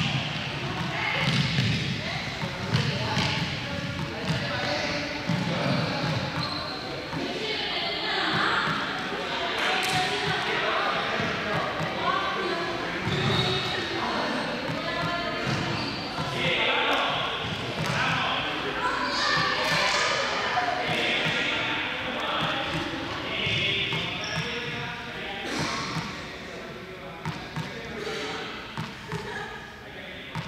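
Balls bouncing on a sports-hall floor, with indistinct voices echoing in the large hall throughout.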